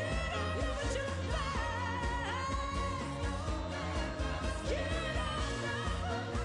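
A woman singing lead live into a microphone over a pop-rock band with a steady beat, holding and bending long sung notes.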